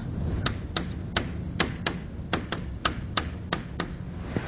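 Chalk tapping and knocking against a blackboard while writing: about a dozen short, sharp taps, unevenly spaced at roughly three a second.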